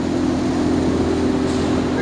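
A steady mechanical hum with a low drone and a few steady tones underneath, like machinery or ventilation running in a large building.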